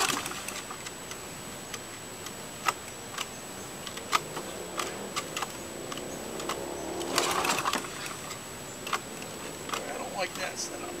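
Briggs & Stratton Quantum 3.5 single-cylinder lawn mower engine running after a cold pull start, with a few sharp clicks. It runs only for a short while, which the owner thinks might be gunk in the carburetor not feeding fuel.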